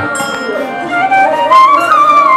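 Bansuri, a side-blown bamboo flute, playing a melody that climbs higher and gets louder about halfway through.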